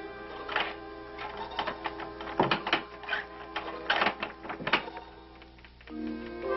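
Film soundtrack: quiet held notes under a run of irregular sharp clicks and knocks, several louder ones in the middle, thinning out and dying down near the end.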